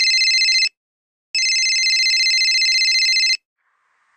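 Telephone ringing with a fluttering electronic ring: one ring ends under a second in, and a second ring of about two seconds follows after a short pause.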